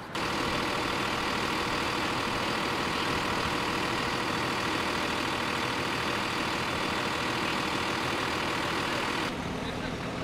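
Police bomb squad step-van truck running close by: a steady, loud engine noise that drops off suddenly near the end to a quieter, lower engine hum.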